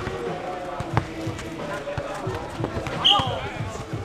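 A footnet ball is kicked and headed back and forth in a rally, heard as a few sharp thuds, the clearest about a second in. About three seconds in there is a short loud shout as the point ends, with players' voices behind.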